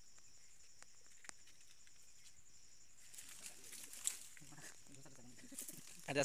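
Faint forest ambience: a steady high-pitched insect drone, with quiet voices in the second half and a single sharp click about four seconds in.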